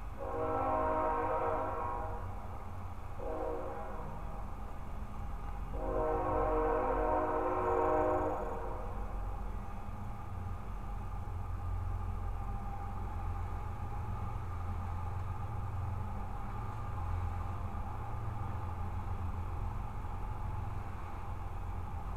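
A horn sounding three blasts, each a chord of several tones: a long one, a short one, then the longest, over a steady low rumble.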